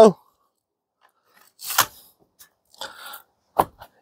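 Plastic edge pieces being handled and pressed onto a polystyrene hive top cover: a short scrape a little under two seconds in, a faint rustle, and a sharp click near the end.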